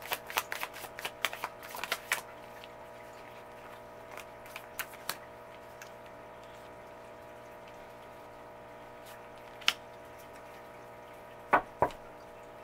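A tarot deck shuffled by hand, a quick run of card clicks for about two seconds. Then a faint steady hum with a few scattered taps as cards are handled and laid down, one sharp click about ten seconds in and two more near the end.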